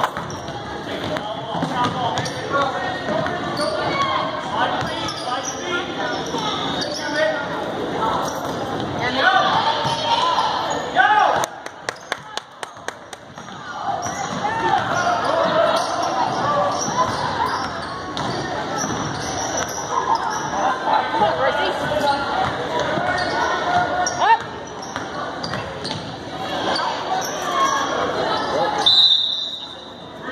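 Indoor basketball game in a gym: spectators and players calling out over a basketball bouncing on the hardwood court, with a short burst of quick clicks about halfway through. A referee's whistle sounds briefly near the end.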